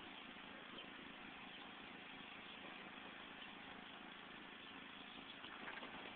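Near silence: faint, steady outdoor background hiss, with a few faint soft taps near the end.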